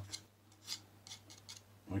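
Steel palette knife scraping and dabbing thick oil paint onto a painting panel, in several short scratchy strokes.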